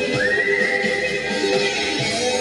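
Live band music with guitars and drums. A single high tone slides up just after the start and holds steady for about a second and a half over the band.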